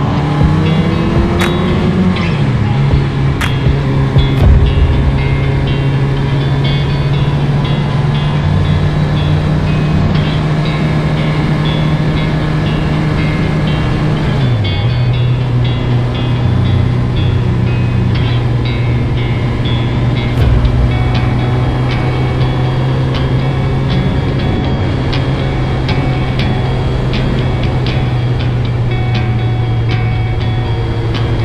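Suzuki Hayabusa inline-four engine running at a steady cruising pitch, dropping briefly in pitch about halfway through as the rider eases off before it steadies again, with music playing over it.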